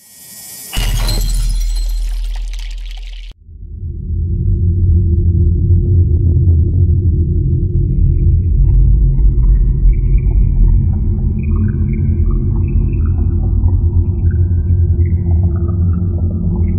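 Edited-in soundtrack: a sudden noisy hit over a low steady tone that dies away about three seconds in, then a low droning music bed, with a slow melody of high notes joining about halfway through.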